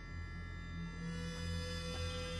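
Low, slowly swelling droning background music, with a steady higher held tone coming in about a second in.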